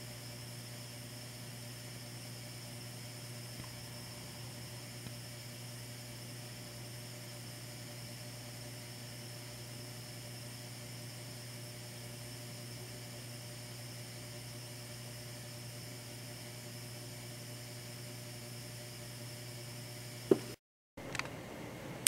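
Steady low electrical hum with faint hiss: the background noise of an indoor recording, with no distinct event. Near the end, a single short click is followed by a moment of dead silence.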